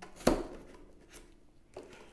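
A hand-held plastic hole punch pushed through two layers of cardboard against a palm stop. It makes one sharp pop as it breaks through, about a quarter second in, followed by a few faint taps.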